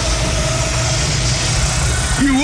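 Loud electronic dance music from a live DJ set: a heavy bass line runs steadily through the gap between MC vocals.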